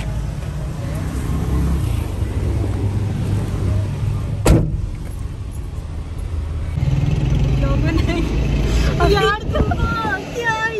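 A car's engine and road noise heard from inside the cabin while driving in traffic, a steady low drone, with one sharp click about four and a half seconds in. A voice comes in near the end.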